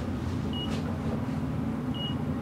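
Steady low hum of a Fujitec traction elevator cab riding smoothly, with two short high beeps about a second and a half apart.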